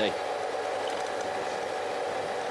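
Steady background noise of a televised bike race: an even hiss with a faint steady hum beneath it.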